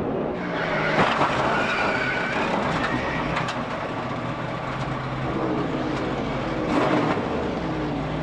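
NASCAR stock car engines running with tyres skidding as a car is turned and spins in a wreck. A few sharp knocks come through, about a second in, midway and near the end.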